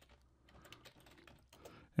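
Computer keyboard being typed on: a run of faint, irregular keystroke clicks.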